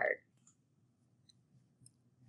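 The tail of a spoken word, then near silence with a few faint, isolated computer-mouse clicks.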